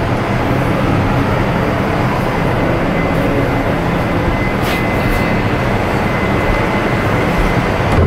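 A cruise ship's horn sounding loudly and steadily through the whole stretch, over a thick, noisy low rumble.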